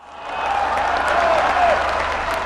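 Large crowd applauding, swelling up over the first half second and then holding steady, with a few voices calling out over the clapping.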